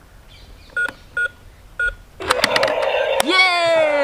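Three short electronic keypad beeps from a toy robot ATM coin bank as its code buttons are pressed. About two seconds in, clicks and a mechanical whirr follow as its motorised cash drawer slides open; near the end a voice comes in.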